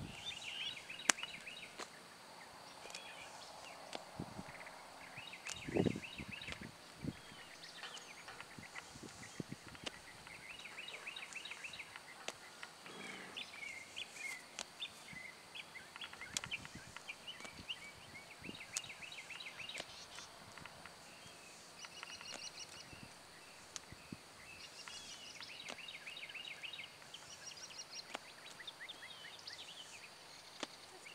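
Songbirds singing throughout, repeated short chirping and trilling phrases. A single low thump about six seconds in is the loudest sound, with a few fainter knocks around it.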